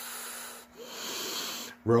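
A man breathing heavily close to the microphone: two long, noisy breaths of about a second each, followed by the start of speech near the end.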